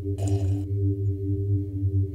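Trailer score: a sustained low droning chord, with a brief burst of noise about a quarter second in.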